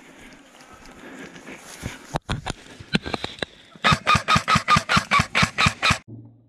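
Rustling of dry bamboo grass, then a few separate sharp clicks about two seconds in. From about four seconds an electric airsoft gun fires a rapid, even string of about a dozen shots, roughly six a second.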